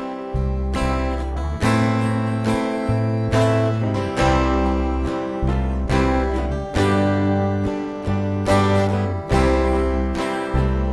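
Acoustic guitar strummed in a slow chord progression, one stroke about every second, as the instrumental introduction to a hymn before the singing begins.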